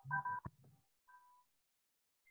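Short electronic beeps, two steady tones sounding together, cut by a click about half a second in, then a single fainter beep about a second in.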